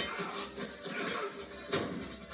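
A TV drama's soundtrack of background score under a fight scene, with a sudden sharp hit near the end.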